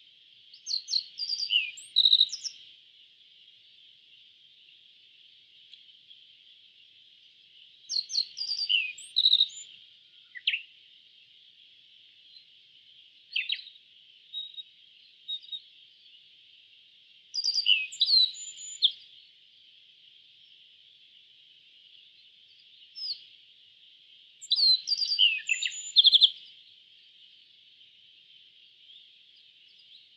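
A bunting singing short phrases of quick, high, sliding notes, each about one to three seconds long, repeated every few seconds. A steady faint hiss lies underneath.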